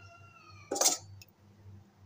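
A high, slightly falling meow lasting under a second, then a short loud scrape of a steel serving spoon against a steel cooking pot.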